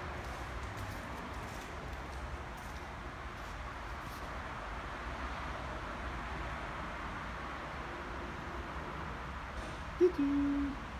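Steady low background noise with a low rumble and no distinct events.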